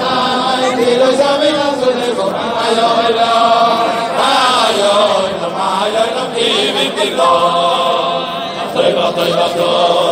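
Large crowd of Hasidic men singing a melody together in unison, many voices joining in one steady chant.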